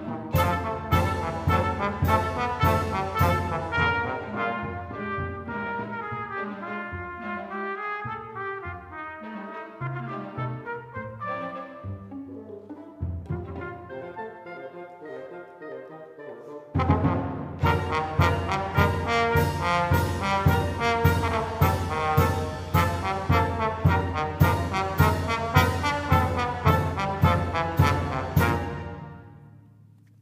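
A live chamber septet of violin, double bass, clarinet, bassoon, trumpet, trombone and percussion playing an instrumental passage with a steady beat. It thins out and grows quieter in the middle, then comes back loud and full a little past halfway.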